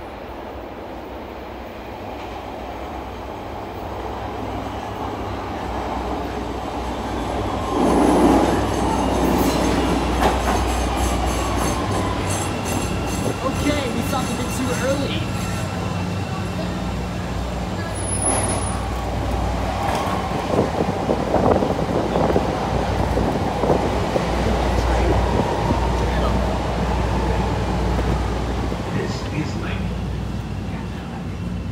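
A CTA Red Line subway train pulling into an underground station: its rumble builds to a peak about eight seconds in, then high steady squealing from wheels and brakes as it slows to a stop.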